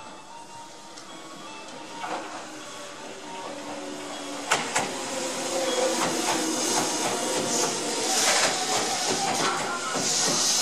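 Tobu 200 series limited express train pulling slowly into the platform, growing louder as the cars pass: a steady whine from the running gear, a few sharp wheel clicks over rail joints about four and a half seconds in, and a rising hiss in the second half.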